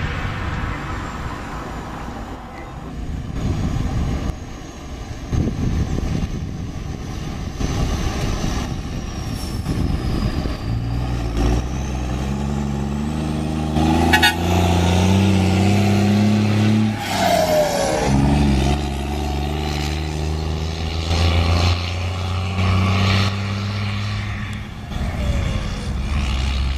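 Heavy diesel engine of a Volkswagen Constellation box truck running and being revved, its pitch stepping up and down as it pulls away and shifts. There is a short sharp hiss about fourteen seconds in.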